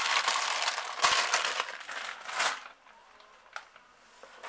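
Clear plastic zip bags full of plastic nail swatch sticks crinkling and rustling as they are gripped and lifted, for about two and a half seconds before fading out. A single light click comes near the end.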